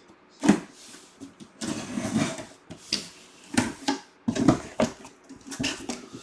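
Paper and cardboard being handled, heard as several short bursts of rustling and scraping with a few knocks. A box is being opened and a paper slip taken out.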